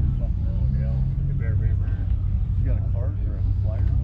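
Voices of people talking in the background over a steady low rumble.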